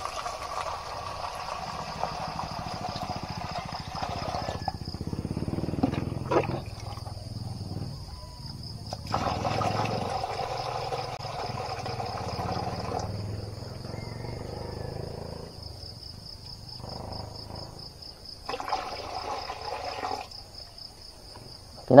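Water poured from a plastic jug into a steel feeding bowl in three spells of a few seconds each, against a steady trill of crickets.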